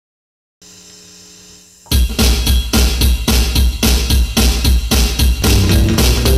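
SG-style electric guitar playing the opening of a song over a backing track with a steady drum beat of about four beats a second, starting about two seconds in after a brief faint hum.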